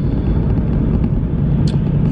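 Steady low rumble of road and engine noise inside a car's cabin while driving, with one brief click near the end.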